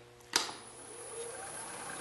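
Wood lathe switched on with a click, its motor spinning up with a faint rising whine and then running steadily at a slow drilling speed.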